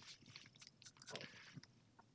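Near silence, with faint, scattered small clicks and ticks.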